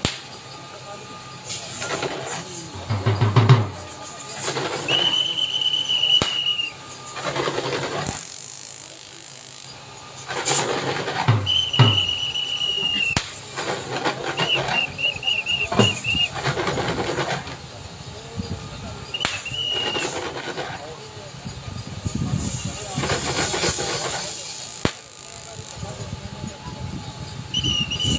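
A whistle blown five times in high, steady blasts, one of them trilling, among people's voices.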